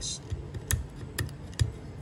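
A fingernail picking at cracked, flaking powder coating on a metal motorbike bracket: a few sharp clicks as the coating chips, over light handling knocks.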